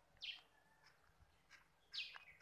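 Faint bird chirps: a short falling chirp just after the start and another near the end, with a few fainter calls between.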